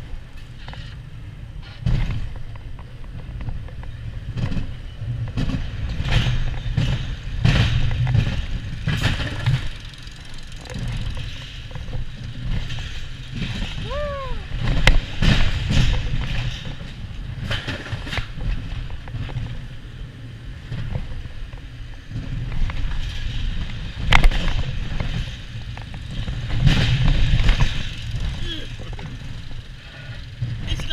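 Wild mouse roller coaster car running along its steel track, with a steady rumble and frequent knocks and rattles that come in louder surges. A short squeal rises and falls about halfway through.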